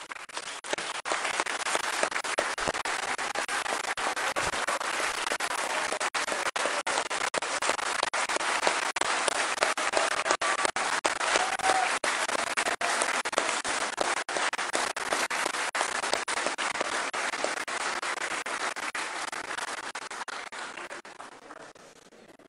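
A large crowd applauding: dense, sustained clapping that starts just after the beginning, holds steady, and dies away near the end.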